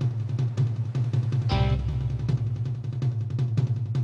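Lowrey organ's built-in rhythm section playing a held drum fill-in: a rapid run of drum hits over a sustained low bass note, with an organ chord coming in about a second and a half in.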